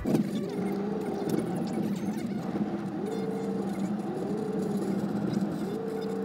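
Car driving in traffic, heard from inside: a steady hum with a tone that rises and falls every second or so.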